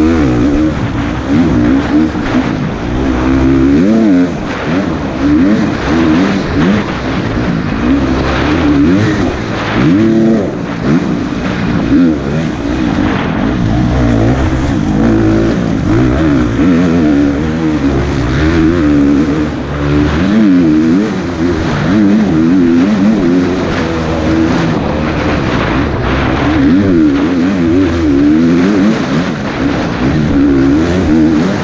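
KTM 350 XC-F dirt bike engine under race load, its pitch rising and falling again and again as the throttle is opened and closed and gears change. It comes through a helmet-mounted camera with heavy wind and rush noise.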